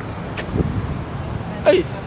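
Steady low rumble of city street noise, with a few faint clicks.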